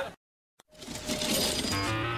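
Dead silence for about half a second at a cut between scenes, then mixed sound fades back in and light background music with held notes starts near the end.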